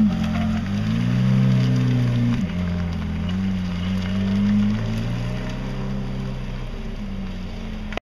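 Ferrari F430 Spider's 4.3-litre V8, breathing through a Tubi aftermarket exhaust, running at light throttle as the car pulls away slowly. The engine note rises, drops sharply a little over two seconds in, climbs again and then fades as the car moves off.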